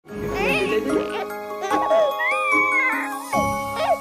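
A baby laughing and cooing, its voice gliding up and down in pitch, over light chiming background music.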